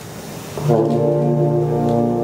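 Concert wind band playing: after a quieter moment, a loud, low, sustained brass chord comes in under a second in and is held.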